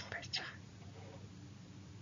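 A speaking voice trailing off in the first half second, then faint room tone with a low steady hum.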